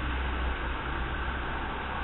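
Steady background hiss with a low hum underneath.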